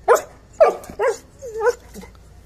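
Yellow Labrador barking four short times about half a second apart, the first two loudest and sharpest, the last two shorter and falling in pitch.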